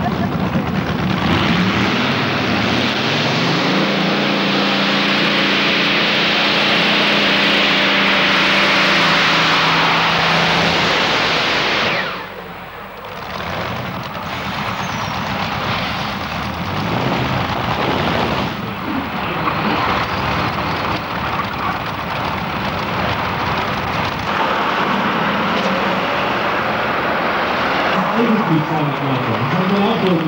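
Pulling tractor's engine at full power as it drags a weight-transfer sled down the track, its pitch climbing over the first few seconds. The sound drops away suddenly about twelve seconds in, then engine noise returns at a lower level.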